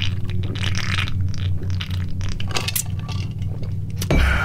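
A lawnmower engine running steadily: a low, pulsing hum with a few small clicks and rustles over it.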